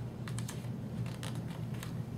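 Pages of a hardcover picture book being turned by hand: a handful of short, crisp paper ticks and rustles spread across the two seconds, over a steady low hum.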